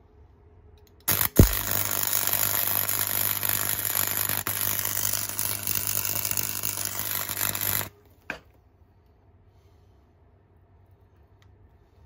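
Electric arc welding: the arc strikes with a sharp knock about a second in, then runs steadily for about seven seconds with an even crackle and a low electrical hum, and stops abruptly. A single short tap follows about a second later.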